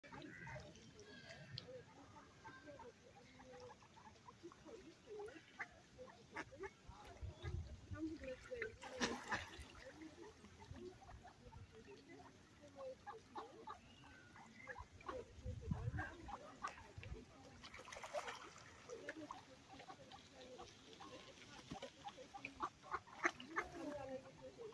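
A flock of ducks on a pond quacking and calling, in short irregular calls that overlap.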